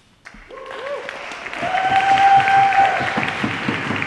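Audience applause starting just after the poem ends and building to a peak. A voice in the crowd lets out a long held whoop over the clapping.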